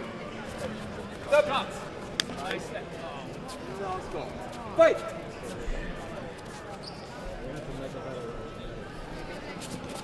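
Echoing sports-hall ambience of distant voices, with scattered short thuds and taps from kickboxers' feet and kicks on foam tatami mats. A sharp tap comes about two seconds in.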